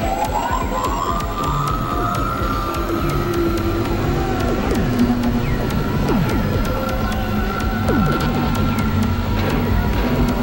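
Experimental electronic synthesizer music: a siren-like tone glides up in the first second and holds high over a low, pulsing drone. Several falling pitch sweeps and scattered clicks and glitches run through it.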